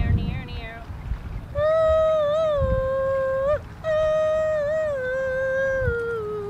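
A dog whining in high, wavering cries, then two long, held howls, each about two seconds, the second falling in pitch in small steps near the end.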